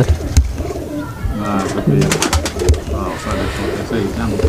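Domestic pigeons cooing, with a quick run of sharp clicks about two seconds in.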